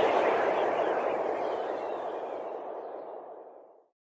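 Logo intro sound effect: the tail of a whooshing swell of noise, fading away steadily until it dies out near the end.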